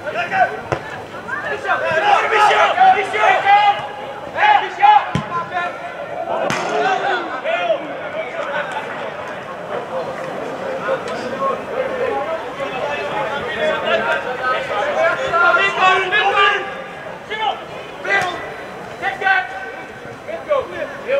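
Football players shouting and calling to each other on the pitch, with a few sharp thuds of the ball being kicked, the loudest about five seconds in.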